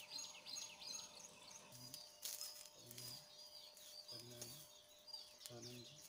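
Faint small birds chirping in short, quick calls. A few faint low sounds come about a second apart in the second half.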